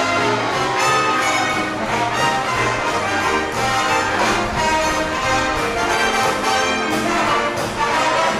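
A live band with a brass section playing, with a bass line and drums keeping a steady beat.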